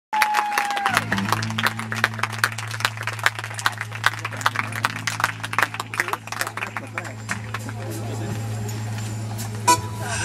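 Stage PA and amplifier hum, steady and low, with irregular sharp clicks and crackles several times a second that die away about seven seconds in. A high tone fades out in the first second.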